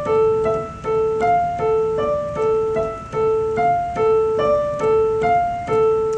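Keyboard with a piano sound playing a right-hand broken-chord pattern over D minor: a repeated A alternating with D, E and F above it. The notes come in an even, unhurried rhythm, with the low A returning about once a second.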